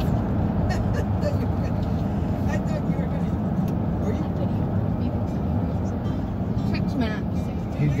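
Steady low road and engine rumble heard from inside the cabin of a moving car, with faint voices in the background.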